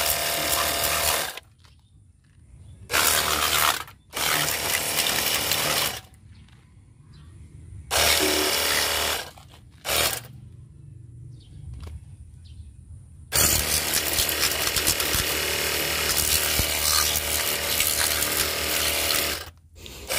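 Cordless battery-powered pressure washer gun running in bursts as the trigger is pulled and released. The motor and pump hum while a strong jet of water hisses against a scooter's rear wheel and muffler. Several short bursts with pauses between them are followed by one long run of about six seconds near the end.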